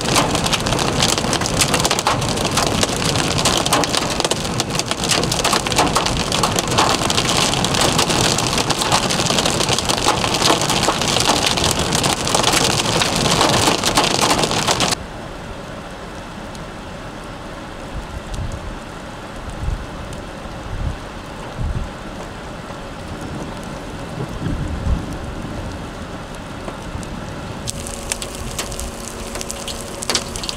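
Heavy rain pelting a moving vehicle's roof and windshield in a dense, steady patter. About halfway it drops abruptly to a much quieter stretch with a few low thumps and rumbles.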